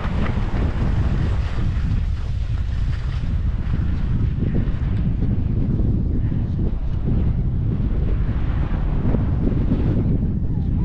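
Steady, heavy wind buffeting the microphone of a camera carried by a skier moving downhill, with the hiss of skis sliding on packed snow above the low rumble.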